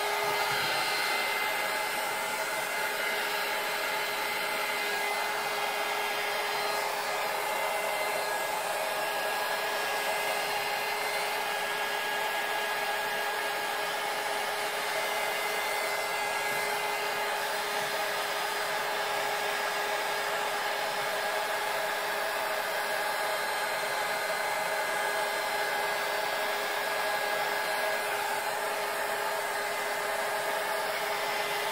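Handheld electric heat gun running steadily: a constant rush of blown air with a steady whine over it, as it is swept across wet epoxy resin to push the white pigment into lacy wave foam.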